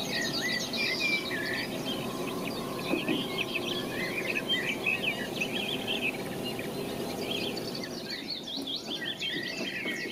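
A chorus of small songbirds, many quick chirps and trills overlapping, over steady background noise.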